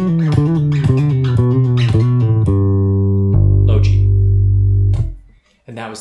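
Four-string electric bass guitar played fingerstyle: a quick descending run of plucked and hammered-on legato notes, then a low two-note chord with the open strings left ringing for about a second and a half before it is damped.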